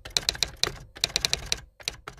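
Keyboard typing sound effect: rapid key clicks in short irregular runs with brief pauses between them.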